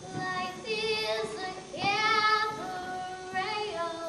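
A girl singing a show tune, holding a long note with vibrato about two seconds in, between shorter sung phrases.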